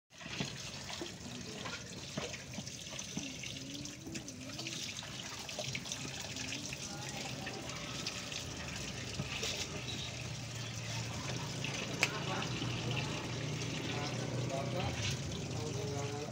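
A sulcata tortoise biting and chewing soft papaya: many short wet clicks over a steady background hiss, with one sharper click about twelve seconds in. Faint voices come and go in the background.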